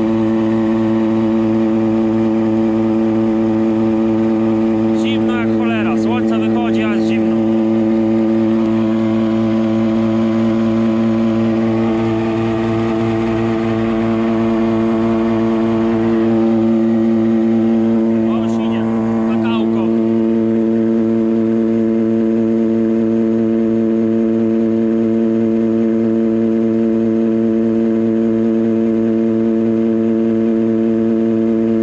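Tractor engine running at a steady speed, a constant even drone throughout. Two short clusters of high, gliding squeals cut in, a few seconds in and again past halfway.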